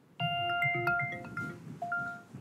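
Facebook Portal smart display's call-answer chime: a short run of bell-like electronic tones as a video call connects, with one more tone near the end.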